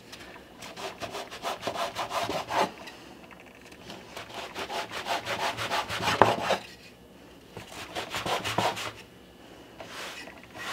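A wooden bench scraper cutting through floured bagel dough and scraping on a wooden butcher-block counter, in three runs of quick rasping strokes with short pauses between.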